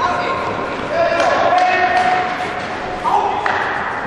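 Voices calling out, including one long held call, while an ice stock is thrown: a knock as the stock lands on the ice and a few sharp knocks besides, in a large hall.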